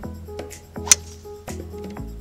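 Background music, with one sharp crack of a golf club striking the ball on a tee shot about a second in.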